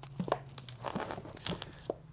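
Shrink-wrapped vinyl LP records being flipped through in a store bin: plastic-wrapped sleeves rustling and crinkling, with several light knocks as the records strike one another.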